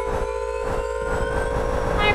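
Intro jingle under a logo animation: a held synthesizer chord over a deep, steady rumble, with faint tones slowly rising above it.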